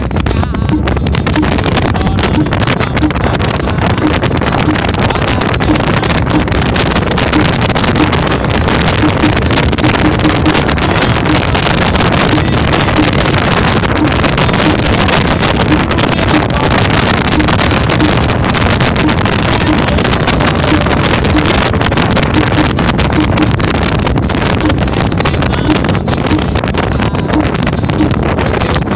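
Heavy wind buffeting the microphone of a moving open vehicle, with the vehicle's engine running underneath, loud and steady.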